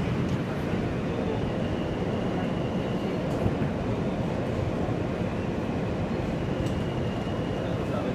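R160A subway car running on the E line, heard from inside the car: a steady rumble of wheels on rails with a faint high whine coming and going, and a couple of faint clicks.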